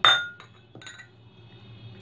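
Crockery clinking: one sharp, ringing clink of dishes knocking together, then a few lighter taps and clicks about half a second to a second later.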